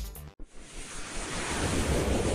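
Background music with a beat cuts off about a third of a second in, and a whoosh sound effect for an animated logo sting takes over: a rushing noise that swells steadily louder.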